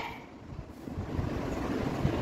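Low, uneven rumble of background room noise, with no distinct event.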